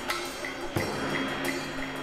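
Marching band show music: sustained melody notes that sound like Chinese opera, with a single sharp percussion hit about three-quarters of a second in.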